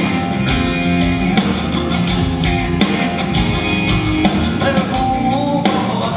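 A live rock band playing: a drum kit keeping a steady beat under acoustic and electric guitars and a violin.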